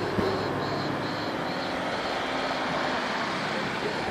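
Steady drone of a propeller airplane flying past, with a faint high chirping that pulses about two to three times a second in the first half and a knock just after the start.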